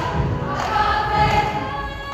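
A large mixed show choir singing sustained chords together, with a low pulsing beat underneath.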